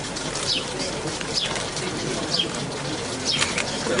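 Pigeons cooing steadily in a loft, with a few short high chirps over them.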